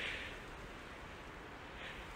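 Faint, steady outdoor noise of wind and rain in stormy weather, with two soft rustles near the start and near the end.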